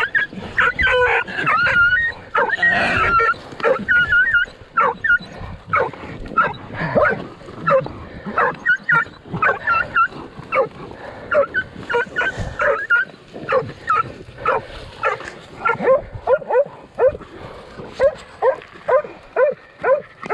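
Hog dogs barking and yelping in a quick run of short calls around a caught wild hog, settling into a steady rhythm of about two barks a second near the end.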